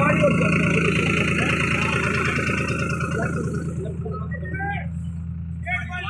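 Diesel tractor engine idling steadily, with voices in the background.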